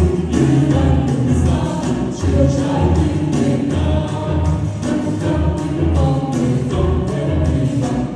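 Upbeat pop song performed live: a backing track with a steady drum beat about twice a second, with a group of voices singing.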